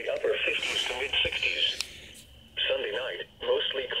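A weather-forecast voice speaking over a radio, sounding thin as through a small speaker, with a short pause about two seconds in.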